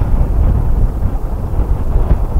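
Wind buffeting the microphone of a camera mounted on a moving tandem bicycle, heard as a loud, unsteady low rumble while riding into a headwind.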